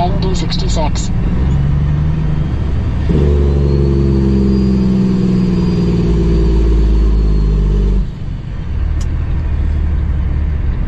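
Cummins ISX diesel engine of a Kenworth W900L heard from inside the cab on the highway: a steady low drone, with a louder, deeper engine note that comes on abruptly about three seconds in and cuts off about five seconds later.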